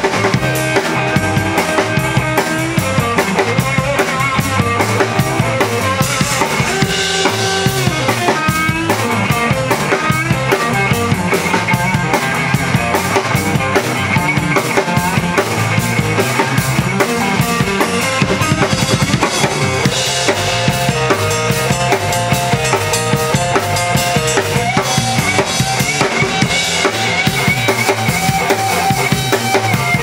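Live blues-rock band playing an instrumental break with no vocals. An electric guitar plays melodic lead lines over an electric bass line and a drum kit keeping a steady, driving beat.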